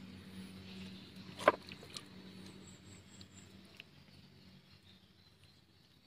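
Hands pressing waterlogged compost-and-soil mix down around roots in a plastic pot, giving faint wet squelching and one brief, louder squelch about a second and a half in. A low steady hum runs underneath.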